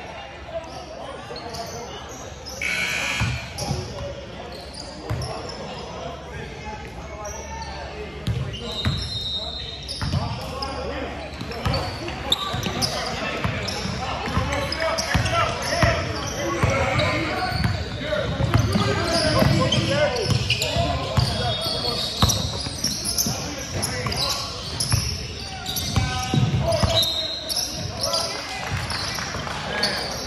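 Basketball dribbled on a hardwood gym floor, repeated thuds that grow more frequent partway through, with players' and spectators' voices echoing in the large hall.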